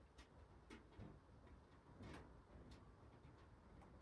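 Near silence: room tone with faint ticks, roughly two a second.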